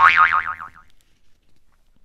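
Cartoon 'boing' comedy sound effect: a single loud springy tone whose pitch wobbles quickly up and down and sinks slightly. It lasts under a second.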